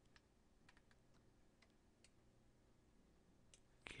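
Near silence with a few faint, scattered clicks from a computer mouse and keyboard.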